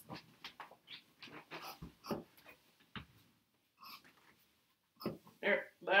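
Fabric being cut with scissors: a run of short, uneven snips through the first three seconds. A brief high whine sounds about four seconds in.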